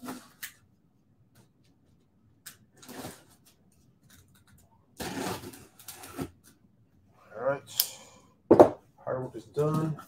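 A small knife slicing the tape seal on a cardboard box, with scattered clicks and scrapes. Louder tearing and rubbing of cardboard follow in the last few seconds as the box is pulled open.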